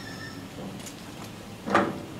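A small trailer's tongue and coupler being moved into place at a tow hitch: low handling noise with a faint squeak near the start, then one short, loud knock near the end.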